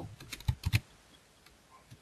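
A handful of keystrokes on a computer keyboard in quick succession during the first second, with one faint tap near the end.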